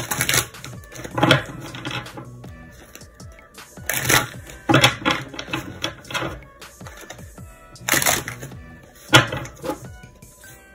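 A deck of tarot cards being shuffled by hand, a quick papery riffle about every one to three seconds, six or so in all, over steady background music.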